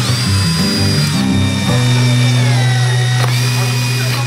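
A hand-held power drill boring into a metal extrusion with a twist bit. Its high motor whine drops in pitch as the bit bites, breaks off sharply about three seconds in and starts again high. Background guitar music plays throughout.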